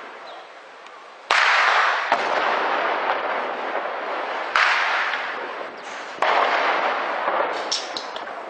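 Three shell explosions during a bombardment, each a sudden bang followed by a long rolling echo. They come about a second in, about four and a half seconds in, and about six seconds in.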